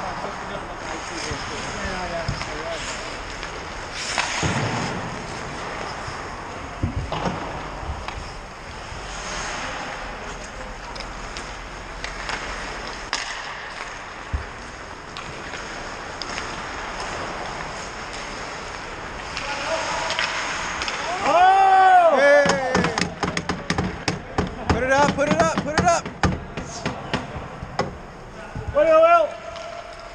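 Ice hockey play heard from the bench: skates scraping over the ice, with a few sharp knocks of stick and puck. Near the end, about two-thirds of the way in, players break into loud shouts and whoops, as at a goal being finished.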